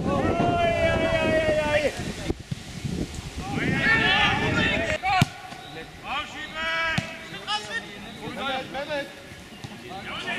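Players shouting to each other on a football pitch: one long held call near the start, then several shorter shouts. Wind rumbles on the microphone through the first half, and there are two sharp knocks around the middle.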